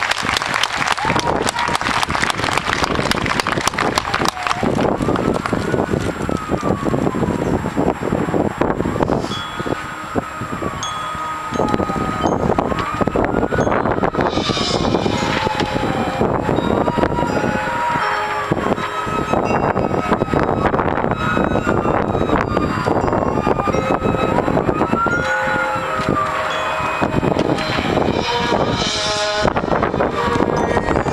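High school marching band performing: held wind notes and drum hits under a siren-like tone that rises and falls in pitch every two to three seconds.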